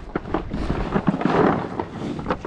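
Miniature Hereford cattle eating feed cubes from a plastic trough close by: a jumble of clicks and knocks as the cubes clatter and are crunched, loudest in the middle.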